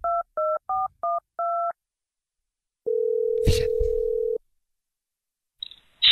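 Telephone keypad dialling tones: a quick run of about six two-note beeps, the last held a little longer, then after a pause one long ringing tone of about a second and a half as the call rings through, with a brief click partway through it.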